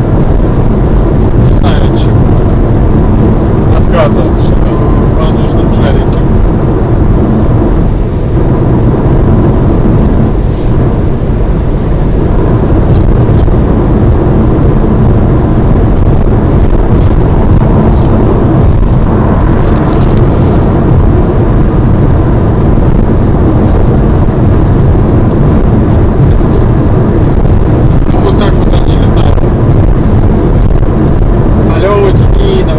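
Loud, steady road and wind noise inside a car's cabin at motorway speed, dominated by a low tyre rumble.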